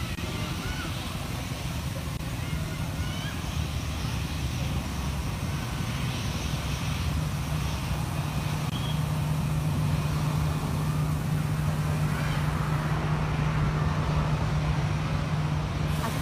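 Jet engines of an Airbus A320-family airliner running as it rolls along the runway: a steady low drone that slowly grows louder as the aircraft comes closer.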